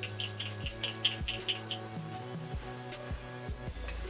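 Background music with a steady bass line and beat, and a quick run of repeated high notes that stops about halfway through.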